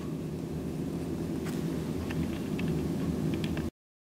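Steady low background hum with a few faint, short scratches of a felt-tip marker writing on paper. The sound drops out abruptly for a moment near the end.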